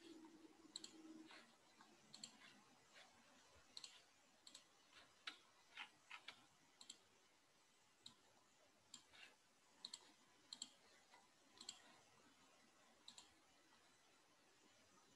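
Near silence with faint, irregular clicks, typical of someone working a computer keyboard and mouse, picked up over an open call microphone.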